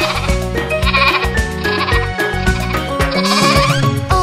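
A cartoon sheep bleating twice with a wavering, quavering voice over children's music, once about a second in and again near the end.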